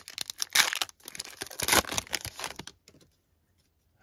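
The wrapper of a trading-card pack being torn open and crinkled as the cards are pulled out: a run of crackling rips that stops about three seconds in.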